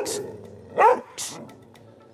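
Mixed-breed male dog giving a short bark about a second in, amid lighter grumbling and huffing. It is a defensive complaint at another dog rather than a threat, in the trainer's reading.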